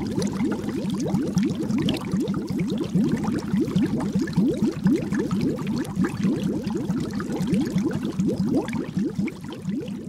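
Bubbling water sound effect: a rapid, steady stream of short bubble blips, each rising in pitch, many per second, easing off slightly near the end.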